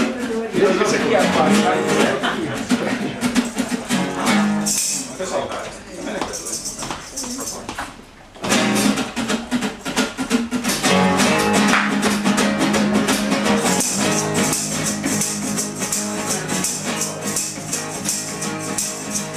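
Acoustic guitars strumming the intro of an unplugged punk-rock song; after loose playing and a brief lull about eight seconds in, the band comes in steadily, and a tambourine joins about two thirds of the way through.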